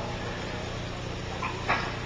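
A pause in a sermon recording: steady background hiss with a low hum, and two faint brief sounds about one and a half seconds in.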